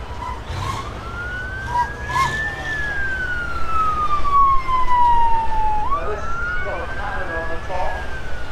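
Emergency vehicle siren in a slow wail: its pitch rises for about two seconds, falls for about three, then climbs again near the end. A low steady rumble runs underneath.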